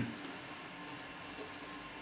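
A pen writing a word on paper: a quick run of short, faint strokes.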